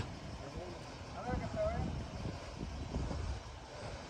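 A faint distant voice about a second in, over a steady low rumble like distant traffic or wind.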